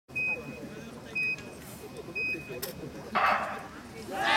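Track-cycling start countdown: three short high beeps one second apart, then a louder, harsher start signal about three seconds in. Crowd murmur runs underneath.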